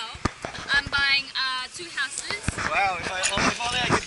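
Several voices talking and exclaiming close by, with a few short sharp knocks or taps among them, near the start and again later on.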